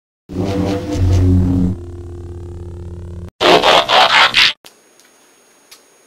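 Intro sound effects: a loud low drone, then a steadier tone with slow sweeping glides, then a harsh roar-like burst about three and a half seconds in that stops after about a second, leaving only faint hiss.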